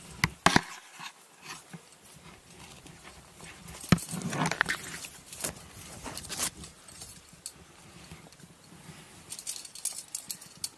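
Scattered clicks, knocks and scrapes of a climber moving up conglomerate rock close to the microphone: hands and shoes on the rock and climbing gear on the harness knocking, the sharpest knocks about half a second and four seconds in, with a quicker run of small clicks near the end.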